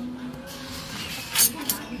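Metal cutlery clinking against the serving tray while bread is being cut and picked up: one sharp clink about one and a half seconds in, and a lighter one just after.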